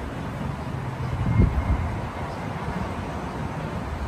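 Steady low rumble of outdoor background noise with wind on the microphone, and a single bump about a second and a half in.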